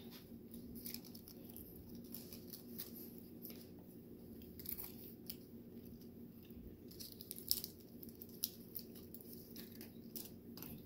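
Faint, scattered crinkling and small clicks of a foil cupcake liner being peeled off a cupcake by hand, over a steady low room hum.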